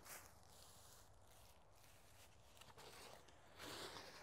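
Near silence: faint outdoor background, with a soft rustle near the end as a potted plant is handled.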